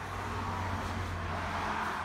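A car passing by on a nearby road, a rushing tyre-and-engine noise that swells and then fades away, over a steady low hum.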